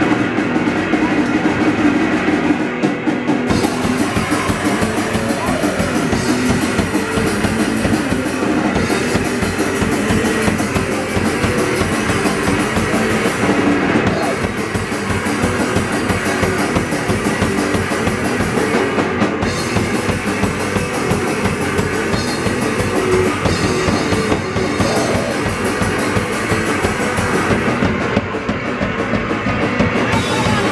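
Live d-beat hardcore punk band playing loud: distorted electric guitar at first, then the drum kit comes in with cymbals about three and a half seconds in and drives a fast, dense beat under the guitars for the rest.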